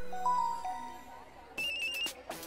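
Samsung mobile phone giving a short chime of a few held tones as it powers on, then an electronic incoming-call ringtone starting about one and a half seconds in.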